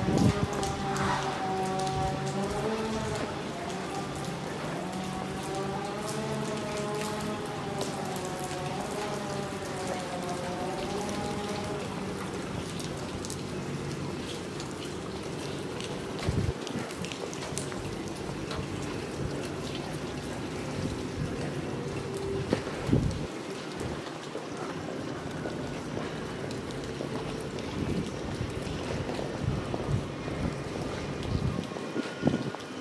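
Steady rain falling on wet stone paving. For about the first twelve seconds, music with a wavering melody over low held notes plays along with it, then fades out. There are a few brief knocks later on.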